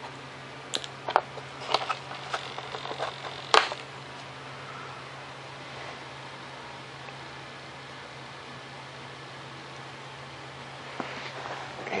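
Several light clicks and knocks from handling small parts and tools in the first few seconds, the loudest about three and a half seconds in. After that there is only a steady low hum of room background.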